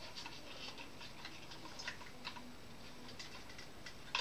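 Faint, irregular small clicks and ticks of a diecast model truck being handled while its trailer is worked loose from the cab.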